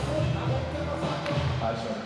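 Ice hockey arena sound at a faceoff: crowd voices in the rink, with a few knocks of sticks and puck on the ice as play starts.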